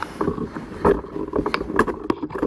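Irregular knocks and rustles of a handheld camera being moved about.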